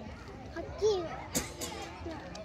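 A young child's short, quiet vocal sounds, with two brief sharp clicks a little past the middle.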